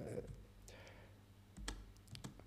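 Faint small clicks of handling at a lectern, close to its microphone, with one sharper click and low thump about one and a half seconds in.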